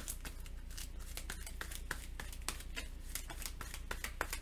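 Scattered light clicks and ticks from handling board-game cards and cardboard pieces, over a steady low hum.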